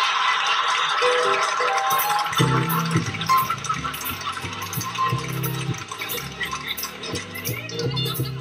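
Studio audience laughter, which gives way about two and a half seconds in to the show's closing theme: an upbeat instrumental with a bass line and a steady shaker rhythm.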